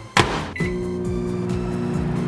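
A Sunbeam 700-watt microwave oven's door is shut with a knock, a short keypad beep follows about half a second later, and the oven starts running with a steady low hum.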